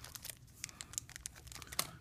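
Cellophane cigar sleeves crinkling faintly in irregular little crackles as cigars are handled and squeezed in their boxes.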